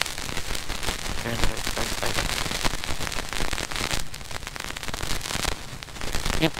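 Dense, steady crackling noise from a faulty recording, with a brief faint voice about a second and a half in.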